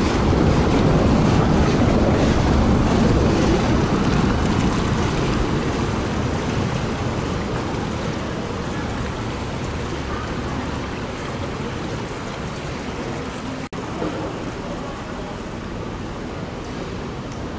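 Hess Swisstrolley 5 articulated electric trolleybus passing close by on cobblestones: a steady rush of tyre noise, loudest at first and fading as it moves away. A brief break in the sound comes near the end.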